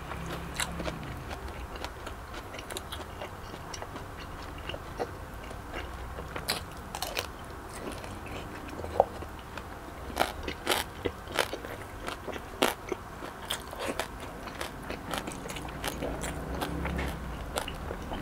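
Close-miked chewing of crispy lechon belly roll: the roast pork skin crackles and crunches with each bite, with a run of louder, sharper crunches about halfway through.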